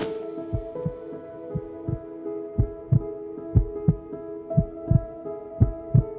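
Heartbeat sound effect: paired lub-dub thumps about once a second, over a held music chord.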